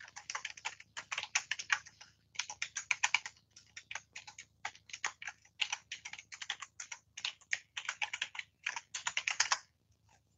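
Typing on a backlit computer keyboard: rapid key clicks in uneven bursts with short pauses, stopping just before the end.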